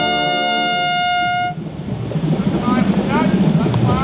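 Drum corps brass hornline (trumpets, mellophones, baritones, euphoniums and tubas) holding a sustained chord that cuts off together about one and a half seconds in. After the release, a murmur of voices with a few short rising calls.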